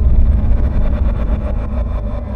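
Deep, steady rumble from a movie trailer's sound design, loud in the low end, with a faint fast ticking pulse running over it.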